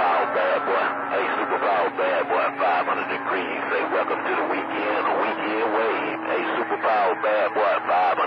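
CB radio skip on channel 28: garbled, hard-to-follow voices of distant stations coming through the receiver's speaker, thin and cut off in the treble, with steady whistling tones running under the talk.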